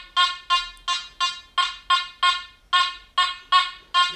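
Makro Gold Kruzer metal detector giving repeated target beeps of one steady pitch, about three a second, each sharp at the start and fading, as a tiny thin gold chain is swept back and forth past its coil in Boost mode at gain 70. It is a clear signal on the chain.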